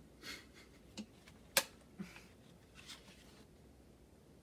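A few light clicks and knocks from a drink bottle and mug being handled and set down. The loudest is a single sharp click about a second and a half in.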